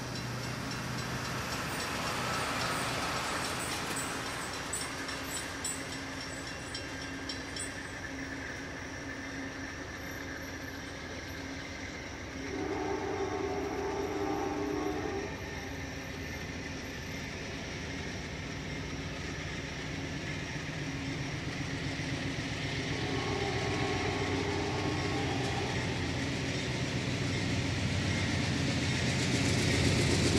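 Amtrak P42 diesel passenger locomotive approaching: two long air-horn blasts, the first near the middle and the second about two-thirds through, over an engine rumble that grows louder near the end.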